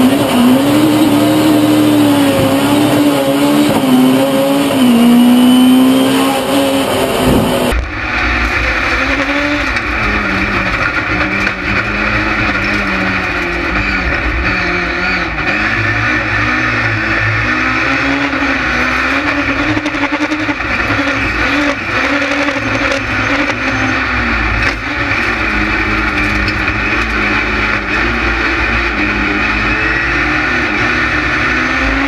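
Ford Fiesta rallycross car's engine heard from inside the cockpit, its revs rising and falling as it races, with road and tyre noise. For the first eight seconds an engine note wavers up and down, then the sound changes abruptly to the fuller onboard racing sound.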